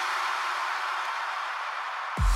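Breakdown in an electronic club remix: with the beat and bass dropped out, a hiss-like noise wash with faint held low tones slowly fades away.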